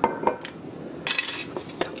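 Kitchen utensils clinking and knocking against a stainless steel saucepan: a few light clicks at the start, a short burst of scraping noise about a second in, and another click near the end.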